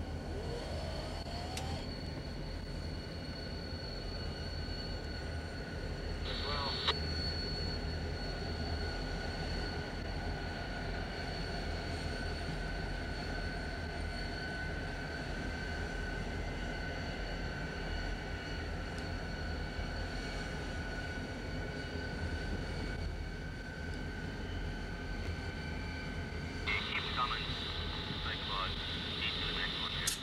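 Diesel locomotives running as they move past, a steady low engine drone heard through a car window.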